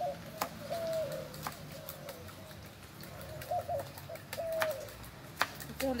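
A dove cooing repeatedly, with short stepped calls, over sharp scattered knocks of a knife chopping on a plastic cutting board.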